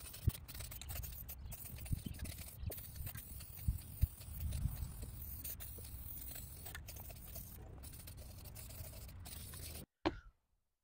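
Aerosol spray-paint can (rattle can) spraying black paint onto a plastic golf cart roof, a faint hiss over a low rumble, with a few light knocks scattered through it.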